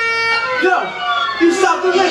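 A held note in the dance show's music ends about half a second in, then a person's voice calls out over the stage.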